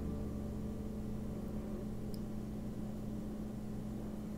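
Quiet room tone with a steady low hum, and a single faint tick about two seconds in; the crochet hook and yarn make no sound that stands out.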